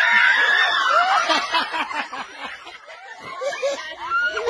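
A group of women and girls laughing and shrieking together, many voices at once, loudest at the start and dying down about three seconds in before picking up again near the end.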